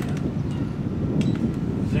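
Wind buffeting the microphone, a low irregular rumble, with a few faint clicks as the plastic boombox is lifted and handled.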